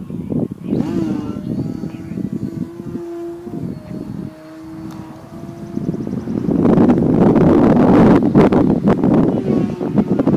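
RC model airplane's motor and propeller droning overhead as a steady tone, dipping briefly in pitch about three and a half seconds in. From about six seconds in, loud wind noise on the microphone buries it for a few seconds.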